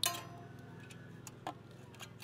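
A sharp click with a brief ringing tail, then a couple of faint ticks, as a cycling helmet is unhooked from a road bike's front wheel and fork.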